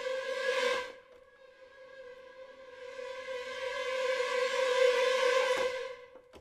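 Sampled orchestral string effect, ProjectSAM Symphobia's 'Ghostly Strings – Killer Bees' patch, played as held notes on one pitch. A first note dies away about a second in; a second swells up gradually and cuts off near the end.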